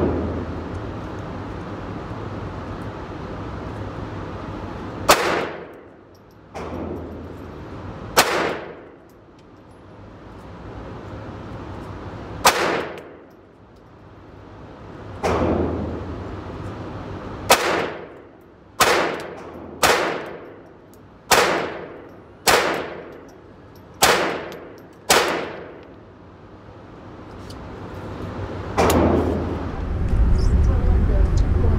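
Ruger Mark IV Tactical .22 LR semi-automatic pistol firing single shots in an indoor range, each sharp crack followed by a ringing decay. Three widely spaced shots come first, then seven quicker ones about a second apart.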